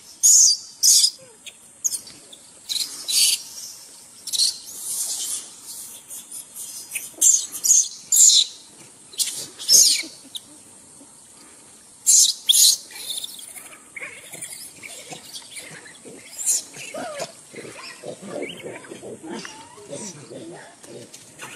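A newborn macaque screaming in short, high-pitched shrieks over and over, crying in distress as its mother grips and handles it. The shrieks come thickest and loudest in the first two thirds and thin out near the end.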